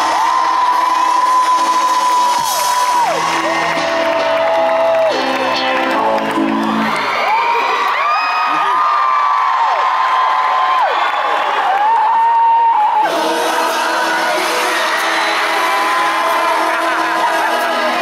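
Festival crowd cheering, with fans near the microphone letting out long, high held screams while a live rock band plays the song's closing notes. The band stops about seven seconds in, and the screaming and cheering carry on.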